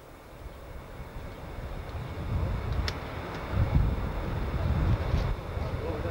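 Wind buffeting the camcorder microphone outdoors, a low irregular rumble that grows louder over the first few seconds, with a few faint clicks.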